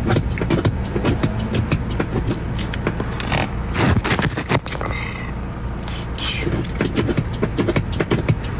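Steady low rumble of a car cabin, with many short scrapes and clicks from a phone being handled close to its microphone.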